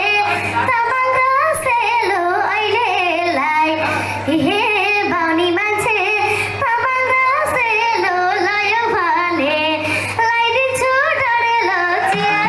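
A young girl singing a melodic vocal line into a stage microphone, amplified over the PA, her voice wavering with vibrato and held notes.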